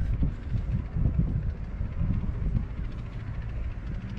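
Wind buffeting the microphone: a low, uneven rumble that swells and dips.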